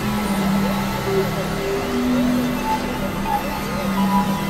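Dense experimental electronic music: several overlapping held synth tones over a constant noisy wash, with repeated quick up-and-down pitch sweeps.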